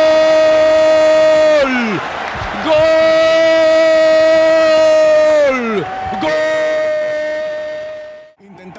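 Football commentator's drawn-out goal cry, a long held "gol" shouted in three breaths, each one loud and steady in pitch before sliding down as the breath runs out.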